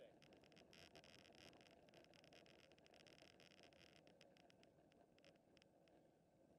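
Near silence: faint rolling and wind noise from road bikes riding along, with scattered light ticks.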